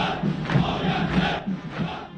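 A large body of marching soldiers chanting in unison, a dense roar of many voices with a pulsing rhythm that fades near the end.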